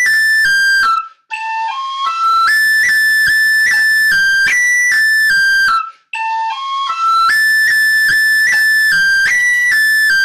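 Tin whistle playing the same two-bar phrase of a 6/8 jig twice over, in the high register with a long roll ornamenting the high A. The playing breaks off briefly about a second in and again about six seconds in before each repeat.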